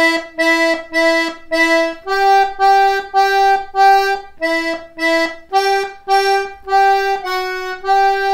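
D/G two-row button melodeon playing a right-hand melody line of short repeated notes, about three a second. The notes step back and forth between two pitches, with a slightly lower note near the end.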